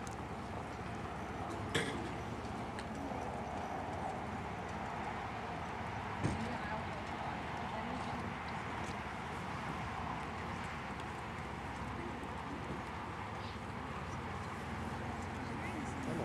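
Horse trotting on a sand arena: soft hoofbeats under a steady outdoor background hiss, with a couple of faint sharp clicks.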